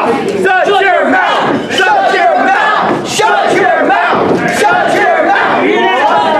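Loud, continuous shouting: a man yelling into a handheld microphone, with the crowd shouting back.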